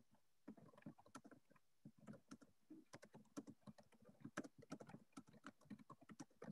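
Faint typing on a computer keyboard: irregular key clicks, several a second, with brief pauses.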